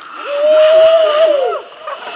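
A zip-line rider letting out a long, loud held yell as he launches off the platform, with other voices shouting under it. The yell rises slightly, then drops away about a second and a half in.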